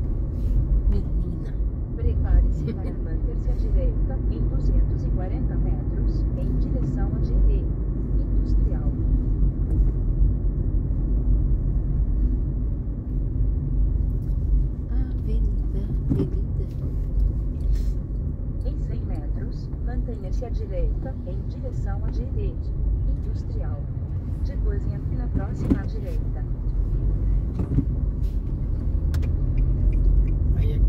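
Steady low engine and road rumble heard inside a car driving slowly in town traffic.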